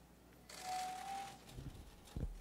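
Press room noise coming in: about a second of hiss that carries a short steady tone, then a couple of low thumps near the end.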